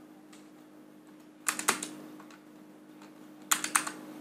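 Computer keyboard being typed on in two quick bursts of a few keystrokes, about one and a half seconds in and again near the end, over a faint steady hum.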